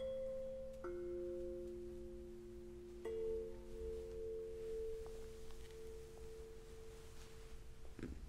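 Tuning forks struck one after another, their pure tones overlapping and ringing on: a higher tone at the start, a lower one about a second in and another about three seconds in, over a low tone already sounding. All of them are damped together near the end.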